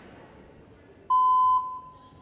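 A single electronic beep about halfway through: one steady mid-pitched tone, loud for about half a second, then trailing off faintly. It is the start tone that comes just before a rhythmic gymnastics routine's music.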